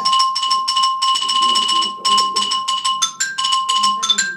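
Xylophone played with mallets in a fast, even run of sharp strikes. Most of it is a high note struck again and again, with brief higher notes mixed in.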